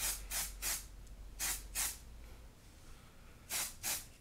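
A pump spray bottle of hair oil misting, seven short sprays in quick groups of three, then two, then two.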